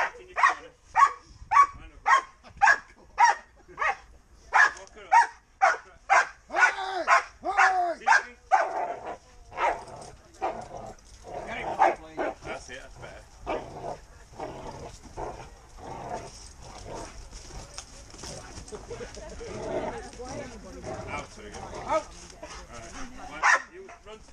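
Malinois–German Shepherd cross barking at a bite-suit decoy while held back on a leash, in protection-work agitation. The barks come fast and even, about two a second, for the first nine seconds or so, then turn more scattered.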